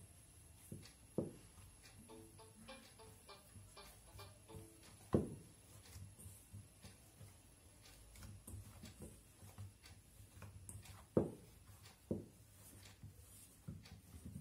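Hands mixing rice flour and maida with water into a dough in a steel bowl: quiet rubbing in the bowl with a few sharp knocks against it, the loudest about five seconds in and again about eleven seconds in.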